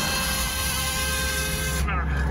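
Small quadcopter drone hovering close by, its propellers giving a steady multi-tone whine; the whine cuts off near the end as the drone is caught by hand and its motors stop.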